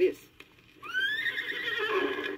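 A horse whinnying: the recorded sound effect on a 1981 read-along record that signals it is time to turn the page. The whinny starts nearly a second in, rises in pitch, then wavers on a held, quavering note.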